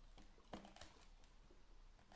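Black plastic fork clicking and scraping faintly against a thin clear plastic food container, a few light clicks, the clearest about half a second in.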